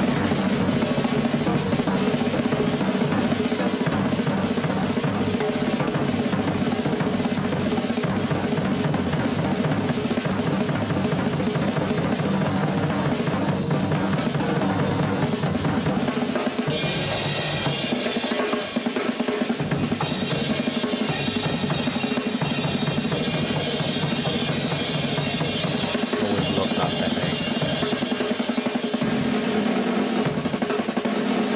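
Drum kit solo with fast, continuous rolls around the snare and toms under the bass drum. About halfway through, the cymbals come in brighter while the low drums ease off.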